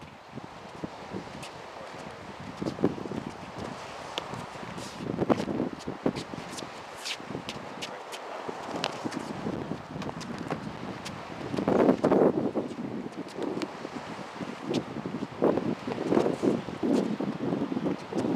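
Wind rushing over the microphone in gusts, louder about five seconds in, near twelve seconds and near the end, with scattered sharp taps and scuffs of shoes on concrete from sparring footwork.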